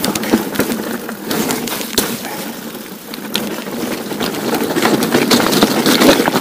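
Steel hardtail mountain bike riding over rocky, gravelly singletrack: tyres crunching on stones, with a steady clatter of knocks and rattles from the bike. It eases off a little around the middle, then picks up again.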